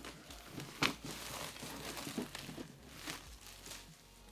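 Thin plastic wrapping being peeled off a boxed cable organizer and crinkling in the hands, in irregular crackles with one sharper crackle about a second in.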